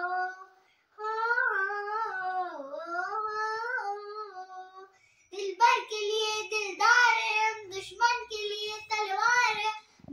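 A young girl singing solo with no accompaniment, in long held phrases. After a short pause about five seconds in, she carries on louder in shorter phrases.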